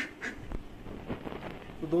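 Ducks quacking faintly a few times in quick succession at the start, then low background sound.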